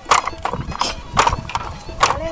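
Wooden handloom clacking as it is worked: a series of sharp, uneven wooden knocks from the beater and shuttle.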